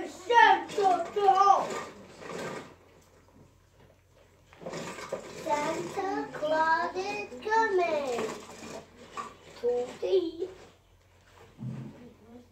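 A young child's high voice talking or babbling without clear words, in three stretches with short pauses between, the longest in the middle.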